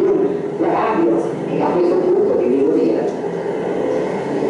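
Speech from the soundtrack of an old archival documentary being shown on a screen, over a steady background hiss.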